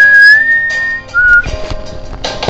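Whistling over backing music: one high whistled note held about a second, rising slightly, then a short lower note. The accompaniment continues underneath and grows busier with strums and knocks in the last half second.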